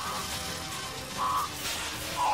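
Music from a film soundtrack mixed with a dense, even noise of action effects, with a brief higher sound a little over a second in.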